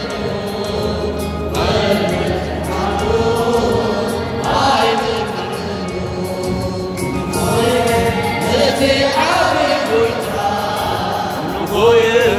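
A choir singing an Eritrean Catholic hymn (mezmur), the voices moving in sung phrases of a few seconds each.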